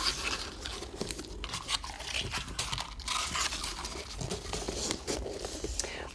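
Ribbon and wrapping paper rustling and crinkling in irregular bursts as hands draw ribbon off its roll and around a paper-wrapped gift box, with small clicks and taps of handling.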